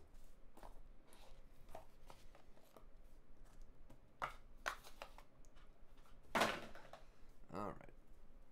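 Trading cards and their cardboard box being handled: small clicks and rustles as the cards are slid out of the box, set down on a rubber mat, and picked up and fanned through. A louder rustle of card stock comes about six seconds in.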